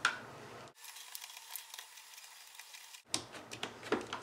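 Faint light clicking and scraping of a small Allen key turning the screws of a helmet headset clamp plate, with a run of sharper clicks about three seconds in.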